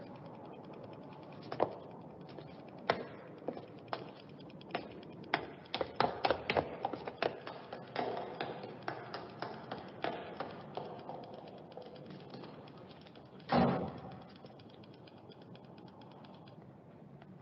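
Irregular taps and knocks, densest in the middle, then one louder thump about thirteen and a half seconds in.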